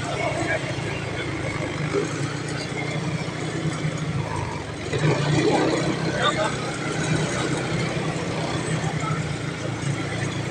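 Motor scooter engine running steadily at low speed, with a crowd of people talking around it.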